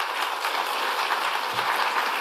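Audience applauding, a steady mass of clapping.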